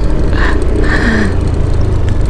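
Steady, loud wind noise on the microphone of a moving scooter, with the scooter's engine running underneath.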